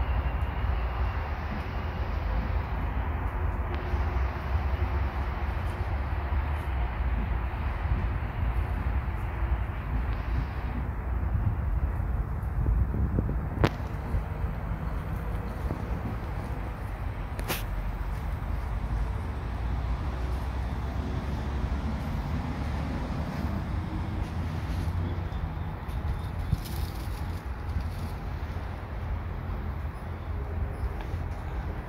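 Steady outdoor background noise, a low rumble with hiss, broken by two sharp clicks about four seconds apart near the middle.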